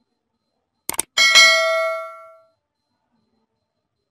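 Two quick clicks, then a single bright metallic clang that rings on and fades out over about a second: a title-card sound effect.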